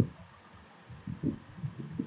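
Soft, irregular low thumps with a sharper knock at the start: handling and desk noise picked up close by the desk microphone while the computer is worked.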